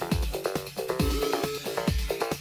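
Electronic dance music from a DJ mix: a steady kick drum, about two beats a second, under a repeating synth melody.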